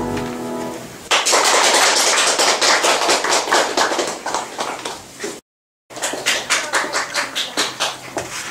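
A piano piece dies away, then an audience breaks into applause about a second in. The sound cuts out for half a second near the middle, and after that the clapping thins to fewer, separate claps.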